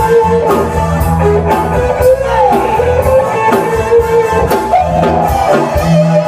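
Live rock band playing loudly: a drum kit keeping a steady beat under electric guitar, bass and keyboard.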